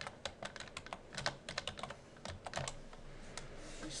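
Computer keyboard typing: a quick run of keystrokes that stops about two and a half seconds in.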